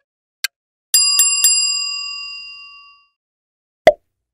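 Quiz-show sound effects: a countdown timer ticking about twice a second, then a bell ringing three quick strikes about a second in, its ring fading over two seconds to signal that time is up. A single short hit sounds just before the end as the next question comes up.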